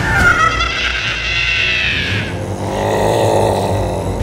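Horror-film creature sound effect: a sudden, loud, wavering shrill screech lasting about two seconds, then a lower, rougher growl.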